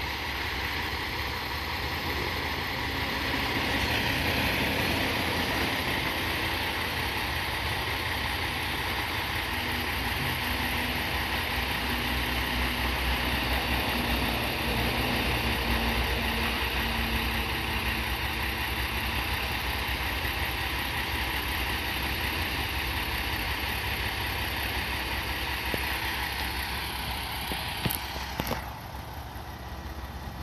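Moka 14 series diesel railcar running with its engine idling at a station: a steady low engine hum with a hiss above it. About two seconds before the end, a couple of sharp clicks come and the hiss stops, leaving the quieter hum.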